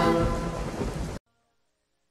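The tail of a vocal intro jingle sung over a rain-and-thunder sound effect, cutting off abruptly about a second in, followed by near silence.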